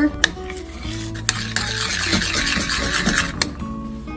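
Metal spoon stirring and scraping thick tomato paste and mustard in a stainless steel saucepan. A steady scraping runs from about a second in until near the end, with sharp clicks of the spoon against the pan. Background music plays underneath.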